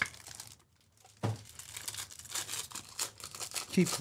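Foil trading-card pack being crinkled and torn open by hand: a dense crackle starting about a second in and running for over two seconds.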